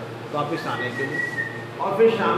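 A man talking in Hindi, with a thin, steady whistle-like tone sounding for under a second over his voice in the middle.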